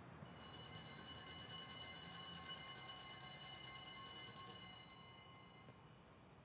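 Altar bells ringing at the elevation of the host during the consecration. Several high bell tones sound together, held for about five seconds, then fade out near the end.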